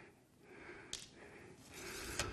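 Faint handling sounds of a wooden ramrod being drawn out of and pushed back down the barrel of a muzzleloading smoothbore shotgun, with one light click about a second in and soft breathing.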